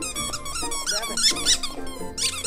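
Squeakers inside a giant plush snake dog toy squeaking over and over in quick, high-pitched runs as a husky bites and tugs at it.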